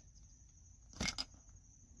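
Two brief clicks close together about a second in, from hands working the plastic headrest bracket of a car fan; otherwise quiet.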